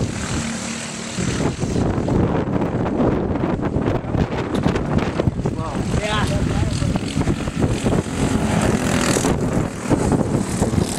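Small engines of racing go-karts running at speed on the track, rising and falling in pitch as karts pass close by, with distant karts droning on around the circuit.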